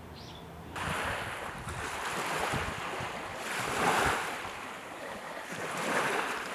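Sea waves washing in, a rushing noise that starts about a second in and swells and falls back in slow surges every couple of seconds.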